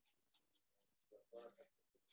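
Faint scratching of short drawing strokes on sketchbook paper, a handful of quick strokes, with a brief faint murmur of a voice a little after the middle.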